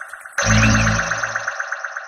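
Closing ident jingle: electronic music with a rapidly pulsing synth chord, joined by a deep bass hit about half a second in, then starting to fade.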